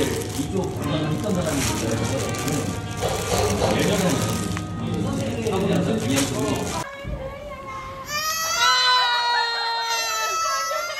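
Music with voices for about seven seconds, then, after a sudden cut, a 20-month-old toddler crying hard in long high wails that rise and fall. She has burst into tears on seeing her mother.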